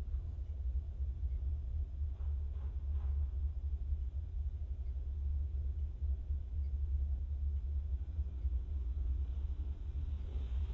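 A deep, steady low rumble from a horror film's soundtrack, playing during a silent night-time bedroom scene. It is the kind of low drone used to signal that an unseen presence is near.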